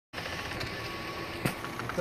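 A door being pushed open over steady background noise, with one sharp click about one and a half seconds in.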